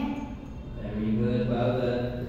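A voice on long, held notes, chant-like rather than ordinary speech, starting about halfway in.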